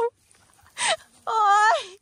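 A woman's drawn-out cry of 'oi!' (Thai โอ๊ย, 'ouch'), its pitch wavering and then dropping, after a short breathy sound about a second in. It is an exclamation just after falling into a hole.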